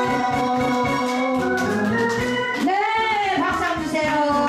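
Live electronic keyboard accompaniment with an organ voice over a steady drum-machine beat, playing the closing bars of a song. Near the end, a swoop rises and falls in pitch.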